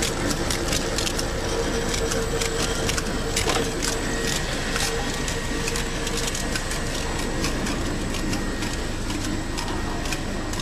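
Shrink-sleeve bottle labeling machine running: a steady mechanical clatter of many quick, irregular clicks over a hum that fades about halfway.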